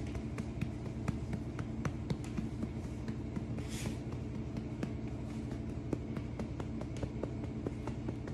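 A hand patting a miniature dachshund's back in light, uneven pats, about three or four a second, to bring up a burp after feeding. A brief rustle comes about four seconds in.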